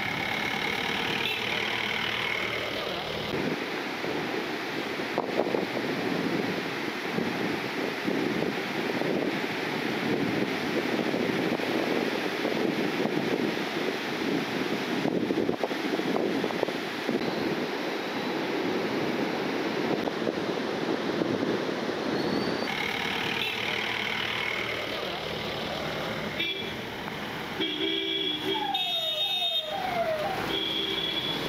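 Steady rushing outdoor background noise with indistinct voices. Near the end, vehicle horns honk in several short repeated toots.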